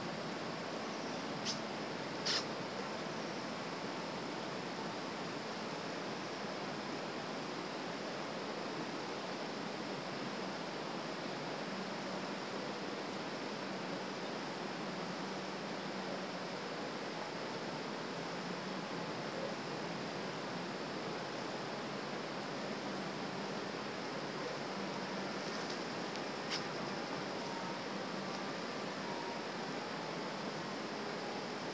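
A long, steady distant rumble that goes on without a break, sounding much like a big truck driving by. Its source is unknown: it is taken for possible thunder but heard as too different from thunder. A few faint clicks sound early on and near the end.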